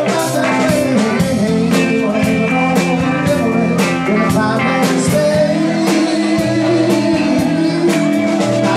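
Live soul-funk band playing: electric guitars, bass guitar and drum kit with a steady beat.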